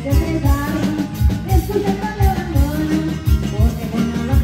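A live band playing with electric bass and drum kit, a steady low kick-and-bass beat under a wavering melody line.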